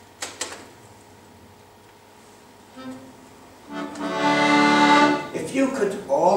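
Accordion: after two sharp clicks near the start and a brief note, a full chord is sounded and held for about a second and a half.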